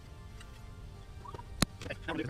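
Work sounds from a truck's engine bay, sped up in a timelapse: a low steady rumble with one sharp click of a hand tool on metal about one and a half seconds in.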